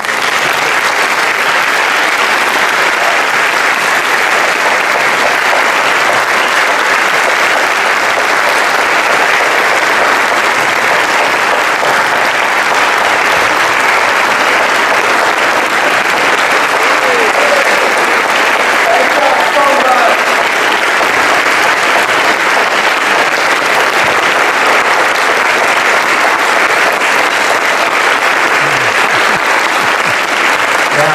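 Large audience applauding steadily and at length in a hall, with a few faint voices rising through it around the middle.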